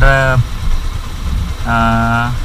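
Motorcycle engines idling with a steady low rumble. Twice, at the start and again near the end, a person's voice holds a long note at one steady pitch over it.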